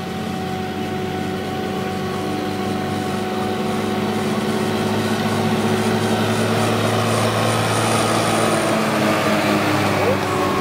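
Krone Big X 650 forage harvester running under load, chopping maize, together with a Fendt tractor hauling the silage trailer alongside. It is a steady drone of engines and machinery that grows gradually louder as the tractor and trailer come close and pass.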